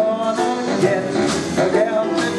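Traditional jazz band playing, horns carrying the melody over a tuba.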